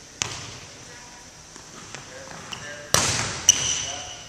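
A volleyball being hit in a passing drill: a sharp smack just after the start, then a louder smack about three seconds in that rings on in the gym hall, followed by a short high squeak.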